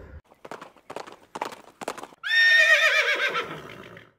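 Horse hooves clip-clopping, about four strikes a second, then a loud horse whinny about two seconds in, its pitch wavering and falling as it fades.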